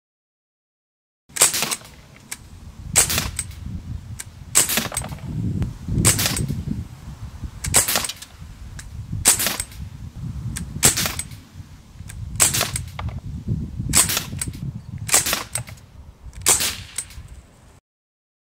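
Sig Sauer MCX .177 semi-automatic air rifle firing pellets one at a time, starting about a second in: about eleven sharp shots, roughly a second and a half apart.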